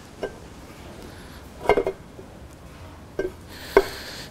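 Light metal clinks and knocks as a 13B rotary engine's center plate is worked down over the eccentric shaft onto the rotor housing: one knock early, a quick cluster near the middle, and two more near the end.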